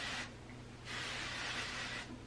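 Aerosol dry texture spray (CGX Salon Graphics 3-in-1) hissing from the can onto hair: a short spray that stops just after the start, a half-second pause, then a longer steady spray from about a second in.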